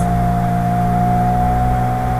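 Steady background hum of the recording, several low tones with a thin steady whine above them, unchanging throughout.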